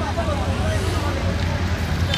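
Indistinct chatter of a crowd of onlookers over a steady low rumble.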